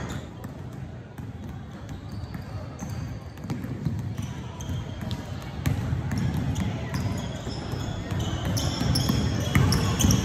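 Several basketballs bouncing on a hardwood gym floor during warm-up, with short high sneaker squeaks and a murmur of voices, all echoing in a large gym. It is quieter at first and grows louder about halfway through.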